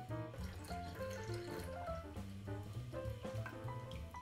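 Soft background music, a light melody of short separate notes over a low bass, with the faint sound of milk being poured from a glass pitcher into a plastic blender jar.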